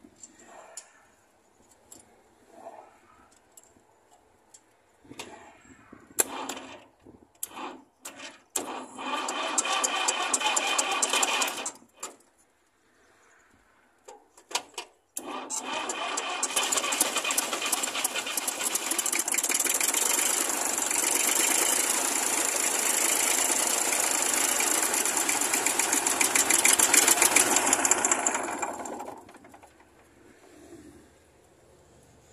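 Fordson Dexta three-cylinder diesel being cranked over on the starter while air is bled from its fuel system after it ran dry of diesel. A few short blips come first, then about three seconds of cranking, a pause of about three seconds, and a long spell of about fourteen seconds that stops near the end.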